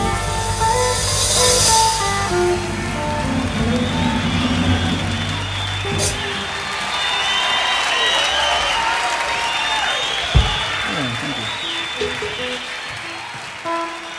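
A live blues-rock band's closing notes: electric guitar ringing over held bass and drums, which stop about six seconds in. Audience applause and voices follow, with a single thump a few seconds later and a few stray guitar notes near the end.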